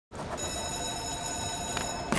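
Telephone ringing with a rapid trilling ring that starts about a third of a second in and stops near the end.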